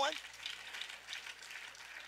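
Congregation clapping, a faint even patter of many hands.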